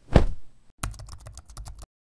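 Logo-animation sound effects: one sharp hit that dies away within half a second, then a quick run of about ten typing-like clicks that stops shortly before the end.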